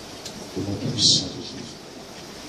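A muffled, wordless voice through a handheld microphone, with one short, loud hiss about a second in.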